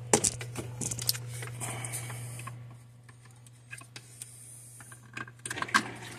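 Power cords being handled and a plug pushed into a power strip: rustling and clicks over the first two and a half seconds and again near the end, over a steady low hum.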